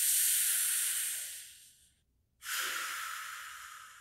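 Two long, breathy hissing exhalations from the performer, the first about two seconds long and bright like a drawn-out 'sss', the second starting about halfway through, lower and fading away slowly.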